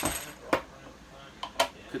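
Sharp metallic clicks and knocks of a tin being handled: a loud one at the very start, another about half a second in, and two close together near the end.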